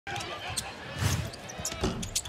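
Basketball game play on a hardwood court: sneakers squeaking and the ball, with voices in the arena behind, and a louder thud about a second in.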